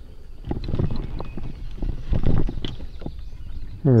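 Irregular knocks and rustling rumble from a freshly landed largemouth bass being handled and unhooked at the boat.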